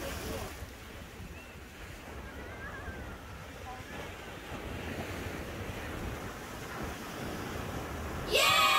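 Ocean surf washing and breaking close by, with wind buffeting the microphone as a steady low rumble. A few faint distant voices come through the noise.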